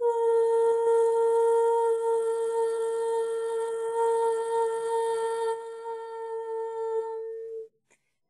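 A woman's voice humming one long, steady, high note, held without a break for about seven and a half seconds and stopping abruptly near the end.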